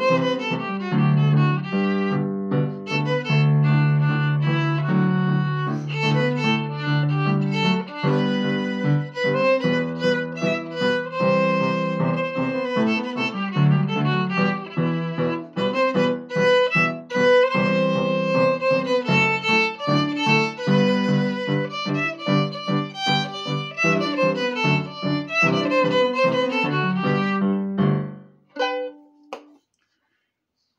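Solo fiddle playing an Irish reel, a quick run of short bowed notes. The tune stops about two seconds before the end.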